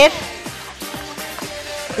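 Background music of soft held notes that change pitch every half second or so.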